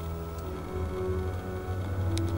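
Soundtrack music of slow, held notes, over a low steady rumble of the car driving.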